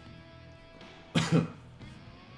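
Background music playing steadily, with a person coughing twice in quick succession just after a second in.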